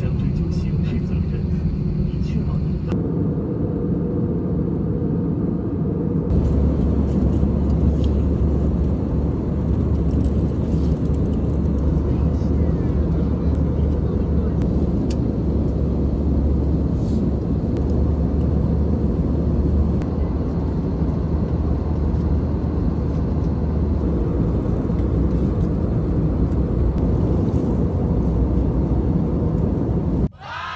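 Steady airliner cabin noise from a passenger seat, the constant sound of the engines and airflow strongest in the low range. The level shifts in steps several times where clips are cut together.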